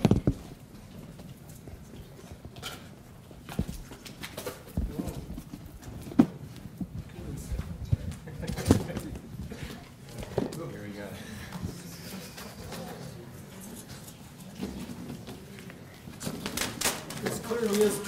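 A large cardboard gift box being handled and opened next to a handheld microphone: irregular knocks, scrapes and cardboard rustles, with quiet murmuring voices in the room.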